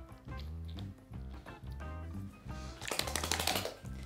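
Background music with a steady bass line, then near the end about a second of rapid, flapping rustle: a spaniel shaking its head and ears to throw out ear cleaner after an ear flush.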